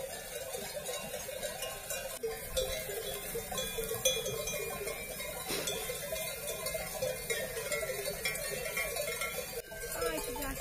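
Many bells worn by a grazing flock of sheep clanking irregularly and overlapping as the sheep walk and feed.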